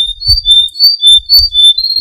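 A caged pet bird singing loudly: short clear whistled notes alternating between two pitches several times a second, going into a long high trill near the end.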